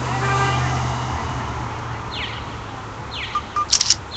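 Downtown street ambience: traffic rumble that fades about a second in, a brief pitched tone at the start, then short high chirps repeating about once a second and a few sharp clicks near the end.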